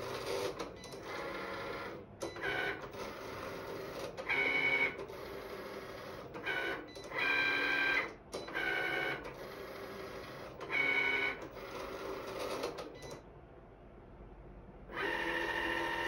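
Cricut electronic cutting machine cutting vinyl sticker-paper labels: its motors whir in short bursts of a second or less as the blade carriage and mat move, each burst at a different pitch, over a quieter steady whir. It goes quieter for a couple of seconds near the end before one longer burst.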